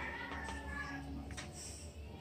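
A faint, drawn-out high call, like an animal's, that slides slightly down in pitch over about a second, followed by a few light taps.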